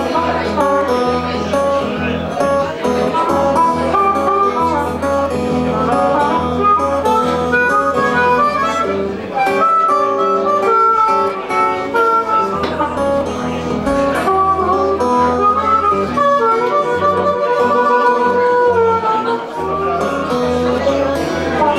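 Blues harmonica solo over acoustic guitar accompaniment: the harmonica plays a melody of bent notes while the guitar keeps a steady rhythm with a low bass line that drops out briefly about halfway through and again near the end.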